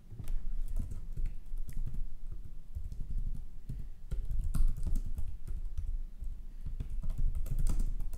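Typing on a computer keyboard: a quick, irregular run of keystroke clicks with dull thuds under them.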